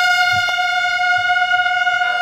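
Brass band trumpets holding one long, steady high note in unison.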